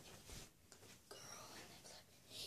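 Near silence: faint room noise, with a soft breathy hiss from about a second in.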